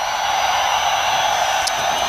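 A steady hiss with a thin, faint high whine, and a single faint tick near the end.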